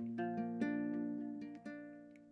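Small guitar plucked a few times, its notes and chord left to ring and fade away.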